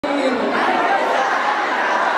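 A crowd of many voices talking and calling out at once, echoing in a large hall.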